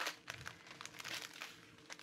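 Small plastic zip bags of square diamond-painting drills crinkling faintly as they are handled and shifted, with a few light ticks.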